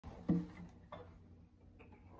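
A soft knock with a brief low ring about a third of a second in, then a couple of faint clicks: handling noise, as on an acoustic guitar being settled.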